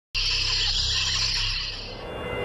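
Animated logo sound effect: a sudden loud burst of hissing, windy noise over a low rumble, starting just after silence and easing off near the end.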